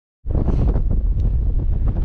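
Wind buffeting the camera microphone: a loud, gusty low rumble that starts about a quarter second in.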